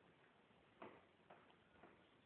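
Near silence with three faint clicks, about half a second apart.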